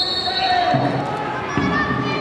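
On-pitch football match sound: players' shouted calls and a football being kicked.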